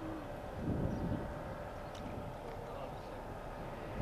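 Street ambience: a steady low rumble of vehicle and traffic noise with a faint constant hum, and faint voices in the background.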